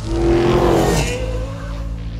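Sound-designed car sounds in an intro logo sting: a car engine rev, loudest in the first second, followed by a fainter slowly rising tone, over a steady low music bed.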